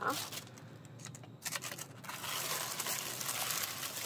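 Tissue paper being lifted out of a shoe box and crinkling. It is quiet at first, then turns into a continuous rustle from about one and a half seconds in.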